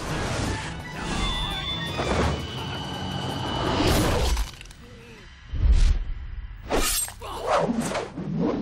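Action-film fight soundtrack: dramatic music under sword-fight sound effects, with swishes and sharp hits, a heavy low thud a little past the middle after a brief lull, and more sharp hits near the end.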